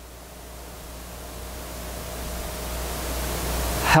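Steady hiss with a low hum, growing gradually louder and then cutting off abruptly near the end.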